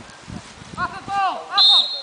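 Players shouting on a football pitch, then, about one and a half seconds in, a referee's whistle blows a short, steady, high blast.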